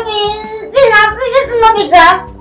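A young girl crying in two long, high, wavering wails, fussing in protest.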